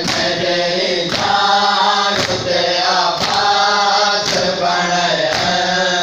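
Men's voices chanting a noha together, with the crowd's chest-beating (matam) landing in unison as sharp slaps roughly once a second, six in all, keeping time with the chant.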